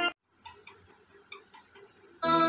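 Song music cuts off abruptly at the start, leaving a very quiet gap with about six faint, irregular clicks.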